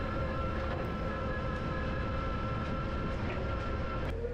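Toyota 8 Series forklift truck running at a steady 10 mph, held there by its speed limiter's high-speed setting: an even drive drone with a few steady tones over a low rumble.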